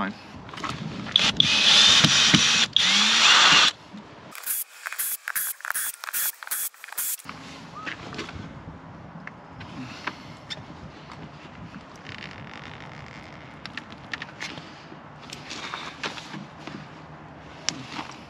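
A power tool whirs loudly for a couple of seconds, followed by a run of about six evenly spaced clicks. For the rest of the time there are faint, scattered clicks and scraping as a small pointed tool pries at the edge of an RV's plastic city-water inlet flange, working it loose from its sticky butyl-tape seal.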